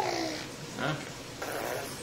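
Baby cooing: a short, high falling coo at the start, a softer gurgle about a second in, then a brief breathy sound.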